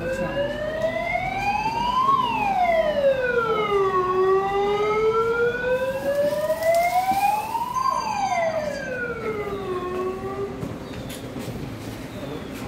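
Vehicle siren wailing, its pitch sweeping slowly up and down twice, on a car driving in and pulling up. The siren fades out about ten seconds in.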